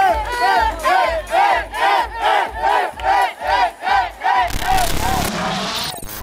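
Rhythmic group chant of short, arching shouts, about two a second, over a steady thumping beat. A rising whoosh takes over near the end.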